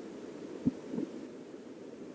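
Flowing stream water heard underwater as a steady low rush, with two dull knocks about a third of a second apart, the first sharper and louder.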